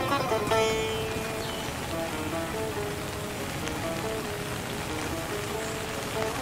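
Steady rain falling, mixed with a slow Indian instrumental melody on a plucked string instrument. A bright plucked note rings out at the start, then single held notes follow one another over the rain.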